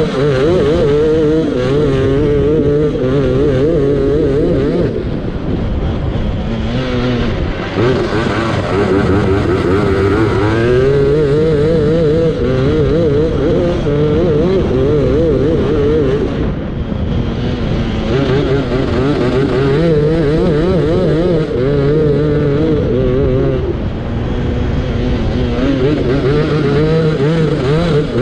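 Racing lawnmower engine running hard under load, its pitch wavering constantly over the bumpy ground. The revs drop briefly several times as the throttle is eased for corners, about five, eight, sixteen and twenty-four seconds in, and climb again each time.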